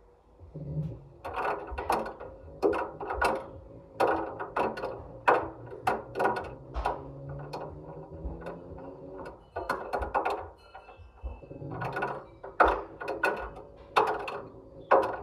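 A ball tumbling inside a front-loading washing machine drum with wet laundry, knocking against the drum about twice a second, heard from inside the drum, over the hum of the drum motor. The knocks pause briefly near the end and then start again.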